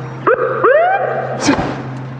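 Two short yelping calls, each rising then falling in pitch, over a steady low hum, then a brief hiss about a second and a half in.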